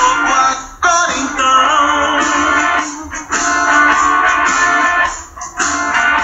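A recorded band song playing: strummed guitar under a melody line, with brief dips between phrases.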